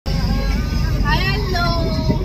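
Steady low rumble of a car heard from inside its cabin, with a short high voice or exclamation from a passenger about a second in.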